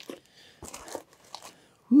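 Cardboard moving box being worked open by hand: faint, irregular scraping and crinkling of the cardboard flaps.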